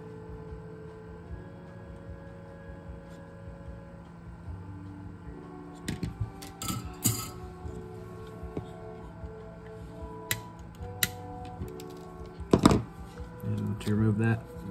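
Soft background music with slowly changing sustained notes. Light clicks and knocks of a metal pedal enclosure and tools being handled, a few together about six to seven seconds in and a louder knock near the end.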